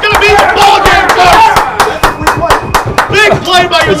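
Excited shouting with no clear words, over a rapid run of sharp claps.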